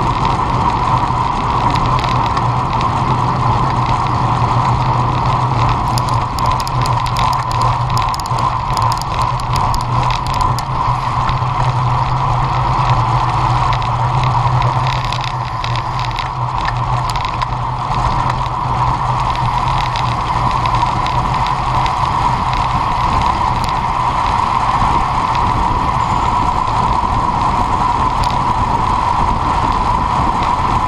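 Steady wind rush and road noise on a moving road bike's action-camera microphone, riding at about 35 to 64 km/h. Spells of clicking from the bicycle come in a few seconds in and again around the middle.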